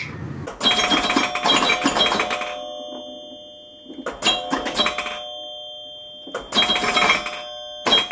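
Chime sound effect: a rattling burst that leaves a ringing bell-like tone fading out, heard four times, spaced about two to three seconds apart.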